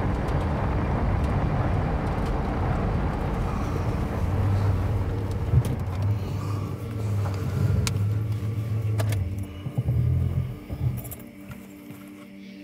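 Truck cab interior while driving: a steady low engine and road rumble with a few sharp rattles and knocks, dying away near the end.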